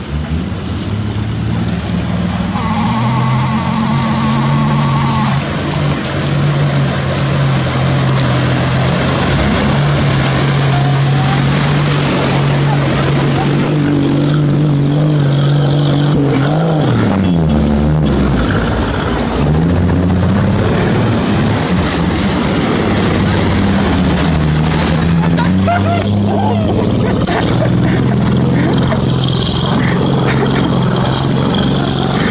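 Open 4x4 off-roader's engine running under load as it drives through a shallow river, with water splashing and spraying. About halfway through the revs drop and then climb again.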